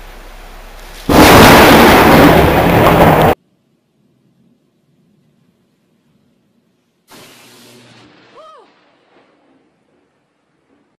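Thunderclap from a very close lightning strike: a sudden, extremely loud crash about a second in that overloads the recording and cuts off abruptly after about two seconds. A faint hiss comes before it.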